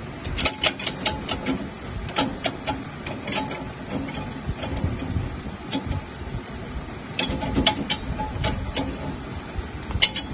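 Steel bars and brackets of a machine attachment clinking and knocking as they are fitted by hand onto a threaded bolt, in irregular sharp clicks that come in clusters, over a steady low mechanical hum.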